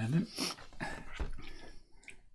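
A quiet, muffled voice making wordless sounds: a short hum that glides up and down at the start, then breathy murmuring.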